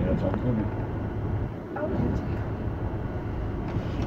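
Metre-gauge electric train running, heard from inside the car: a steady low hum and rumble. Voices murmur in the background.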